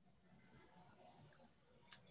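Near silence between sentences: a faint, steady high-pitched whine with a faint low background hum.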